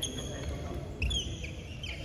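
Badminton shoes squeaking on the court floor: a few short, high squeaks, the loudest about a second in.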